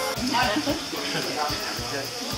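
People talking indistinctly over background music with a steady beat.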